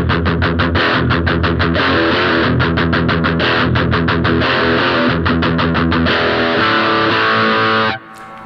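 Distorted electric guitar played through a Boss Dual Cube LX amp on its Metal Stack high-gain amp model. It plays a fast riff of rapidly repeated chord strokes, then held ringing chords near the end, and stops abruptly.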